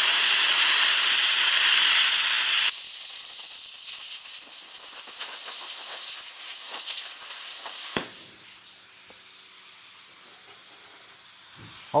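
ArcCaptain Cut 55 ProLux plasma cutter arc in rust-removal mode, hissing loudly as it scours rust off a steel plate without cutting through the metal. After about three seconds it drops to a quieter hiss with faint crackles. About eight seconds in it stops with a click, and a quieter steady hiss carries on.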